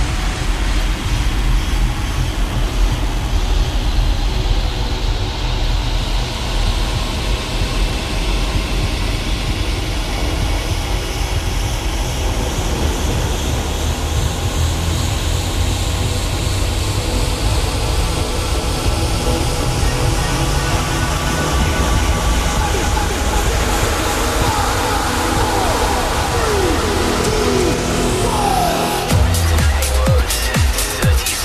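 Tech house DJ mix: a sustained electronic build over a steady low bass, with a slow rising sweep. About a second before the end, a regular kick-drum beat comes in.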